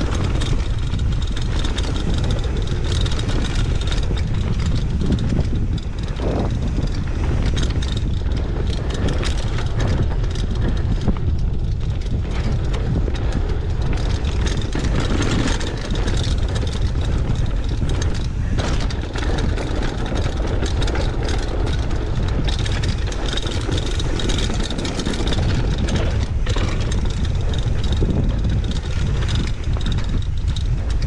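Wind rumbling over a GoPro's microphone and knobby mountain-bike tyres rolling on a dirt trail, with the bike rattling and clicking over bumps.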